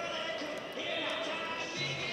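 Hoofbeats of a reining horse loping on arena dirt, heard under arena music and a voice over the public address.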